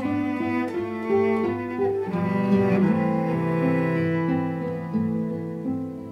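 Cello and classical guitar playing a slow duo, the bowed cello carrying long held notes over the guitar. The music grows softer near the end.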